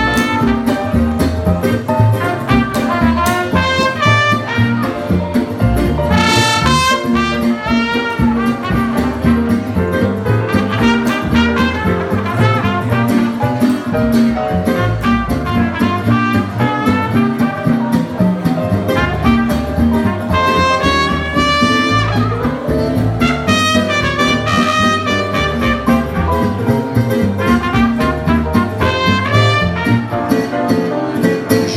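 Small jazz band playing live: a trumpet carries the melody over acoustic guitar and upright double bass.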